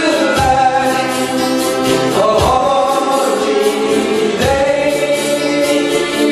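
A live band playing a song, with ukuleles, guitars, keyboard and saxophone backing sung vocals, and a low accent roughly every two seconds.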